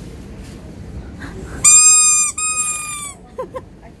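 A squeaky pet toy being squeezed: two loud, high squeaks of steady pitch back to back, lasting about a second and a half in all.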